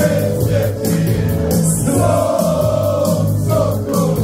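Live Herzegovinian folk song: long held notes sung by several male voices together over keyboard accompaniment with a steady beat, the crowd singing along with the singer.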